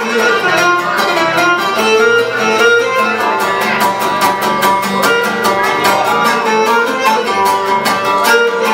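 Cretan lyra playing a bowed melody over a steady strummed accompaniment of laouto and guitar, with bass guitar underneath: an instrumental passage of live Cretan folk music.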